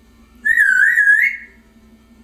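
African grey parrot whistling: one warbling whistle about a second long, its pitch wavering up and down and rising slightly at the end.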